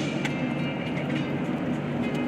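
Steady road and engine rumble heard from inside the cabin of a moving vehicle.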